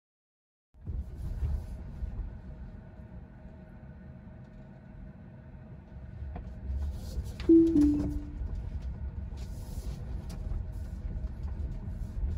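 Low road rumble inside a moving Tesla's cabin, starting just under a second in after silence. About seven and a half seconds in there is a short two-note falling electronic chime.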